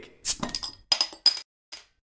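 Glasses clinking together about five times in quick succession, each clink ringing briefly on a high note.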